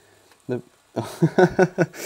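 A man's voice: short vocal sounds about half a second in and again from about a second in, after a brief near-quiet pause.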